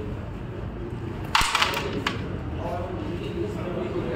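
Carrom break shot: the striker hits the centre stack of carrom men about a second and a half in with a sharp crack, followed by about half a second of clatter as the pieces scatter across the board.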